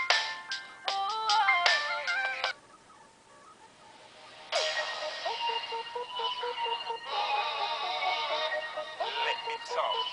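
Pop music played through the small speaker of a Sega i-Dog Amp'd robot dog toy, with little bass. An electronic melody stops about two and a half seconds in, there are about two seconds of near silence, then the next song starts.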